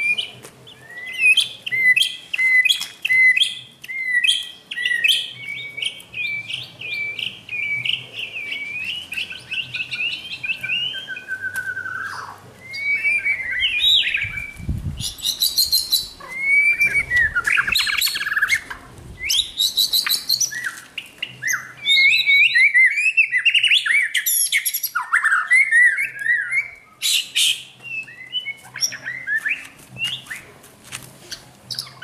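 Caged white-rumped shamas (murai batu) singing almost without pause: loud, varied whistled phrases with rising and falling glides and quick trills. A brief low rumble comes about halfway through.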